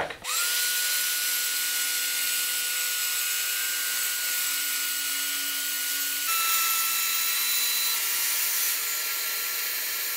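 DeWalt track saw (plunge-cut circular saw) spinning up and ripping a long straight cut along a board, shaving off the board's crown: a steady high whine that rises to speed at the start and dips slightly in pitch about six seconds in.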